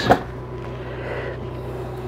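A wooden cabinet door swinging open with a short click right at the start, followed by low, steady room noise with a faint hum.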